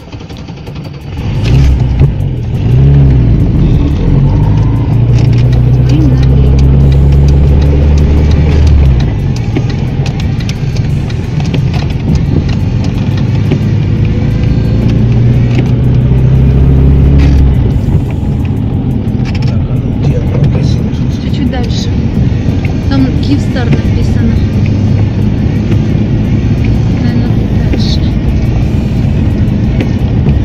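Cabin noise of a moving car on a wet road: a steady low engine drone that swells twice in the first half, over tyre noise.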